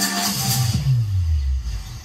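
Electronic music played loud through Sony MHC-GPX mini hi-fi systems. About halfway the treble drops away and a deep bass note slides steadily downward, then the sound fades near the end.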